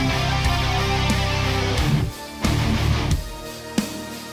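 Recorded rock band music with electric guitars and drums. About halfway through, the full band drops out, and sharp stop-start band hits follow with quieter gaps between them.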